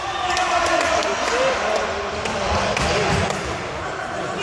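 Futsal ball knocking sharply and repeatedly on a wooden sports-hall floor, under a steady wash of children's and spectators' voices in the hall.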